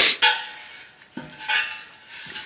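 Rusty iron wheel hub assembly of an old steel-spoked plow wheel clanking and ringing as it slides off its axle: one clank at the start and another about a second and a half in.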